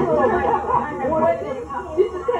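Several people talking at once in casual, overlapping conversation.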